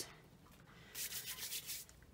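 A hand-held wipe rubbed quickly back and forth over a craft mat, clearing off loose mica powder: a run of fast scratchy strokes starting about halfway through.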